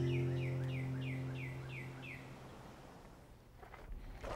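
The last held acoustic-guitar chord of a theme tune fading out, with a bird singing a quick series of about eight downward-slurred chirps, roughly four a second, over it for the first two seconds. Then it is nearly silent.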